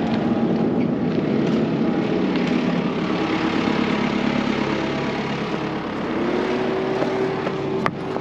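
Farm tractor engine idling steadily close by, with a single sharp knock just before the end.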